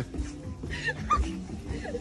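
Soft background music with low murmuring voices, and two short high-pitched whimpering squeaks about a second in.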